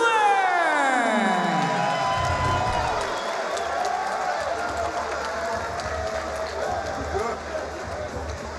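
Arena PA music and crowd noise in a fight venue. It opens with a long pitched tone sliding down over about two seconds, then a steady pulsing low beat with crowd voices and cheering over it.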